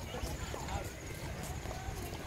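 Footsteps on a brick walkway, about two steps a second, over a low wind rumble on the microphone, with faint voices of people nearby.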